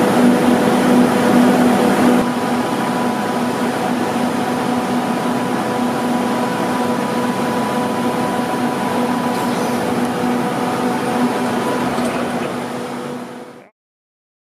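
Steady machine hum of a large walk-in freezer room, a hiss of air with a low droning tone under it. It fades out shortly before the end.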